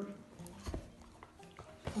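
Mostly quiet room with a few soft knocks and taps: one low dull knock just under a second in and sharper taps about half a second in and near the end. A brief murmur of a voice at the very start.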